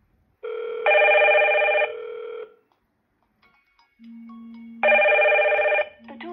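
Hikvision video intercom ringing for an incoming call from the door station: two rings about four seconds apart, each a chord of several steady tones. A lower single tone starts just before the second ring.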